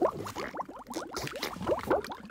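Liquid bubbling and gurgling: a quick run of many small bubbles popping, about ten short rising blips a second.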